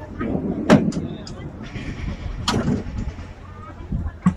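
People talking in the background, with two sharp knocks, one just under a second in and another about two and a half seconds in.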